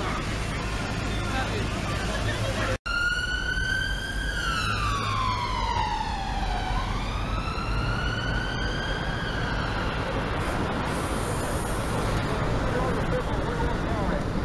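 Emergency-vehicle siren wailing over city street traffic and crowd noise. Starting about three seconds in, just after a brief dropout, its pitch falls slowly, rises again, then fades out about ten seconds in.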